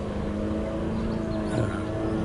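A small motor running steadily, a hum with several held tones.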